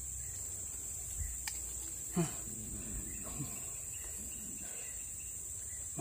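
Steady high-pitched insect drone, with faint voices briefly about two seconds in and again a second later, and a single small click about one and a half seconds in.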